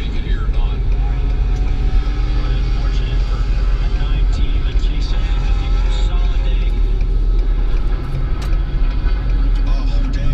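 Steady low rumble of road and engine noise inside a pickup truck's cabin, driving at road speed while towing a camper trailer.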